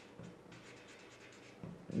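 Felt-tip marker writing on paper: faint, quick, closely spaced strokes as a word is written out.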